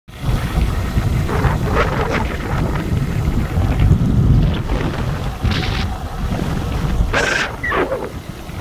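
Wind buffeting an outdoor microphone: a heavy, uneven low rumble with short hissing gusts, the strongest about seven seconds in.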